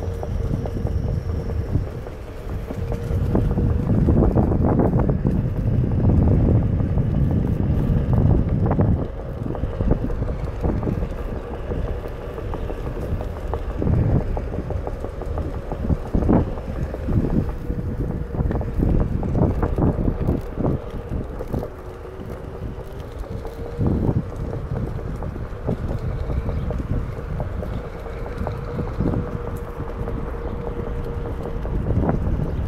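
Wind rushing over the microphone of a rider travelling on a Onewheel electric board, heaviest in the first third, with a steady whine from the board's hub motor that dips in pitch briefly about two-thirds of the way through. Scattered short knocks come through as the board rolls over the pavement.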